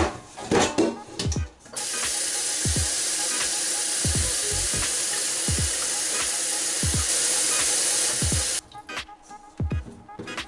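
Kitchen tap water pouring into a stainless steel pot of quinces, starting about two seconds in, running steadily, and cutting off sharply near the end. Before it, a few knocks as the quinces are handled in the pot.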